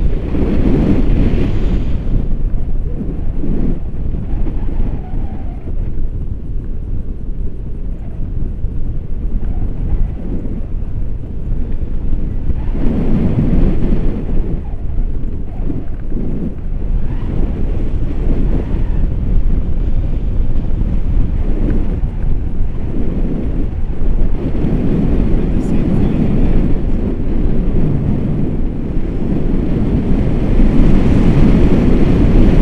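Wind from a tandem paraglider's flight rushing over a selfie-stick camera's microphone: a loud, low rumble that swells in gusts near the start, about halfway through and again toward the end.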